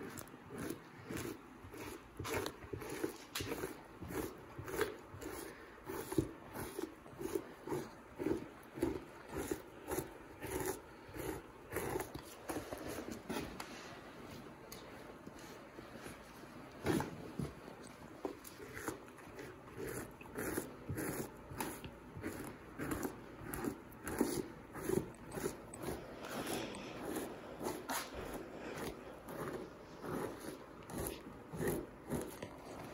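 Two-handed fleshing knife scraping the flesh side of a lynx pelt on a wooden fleshing beam, in repeated strokes about one to two a second with a brief lull midway, pushing the thin membrane off the hide.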